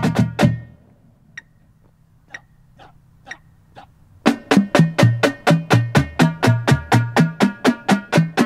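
Marching drumline of snare drums, tenor drums and bass drums playing a warmup exercise. A phrase ends just after the start, a few faint clicks fall in the pause, and the full line comes back in about four seconds in with steady, even strokes at about four to five a second.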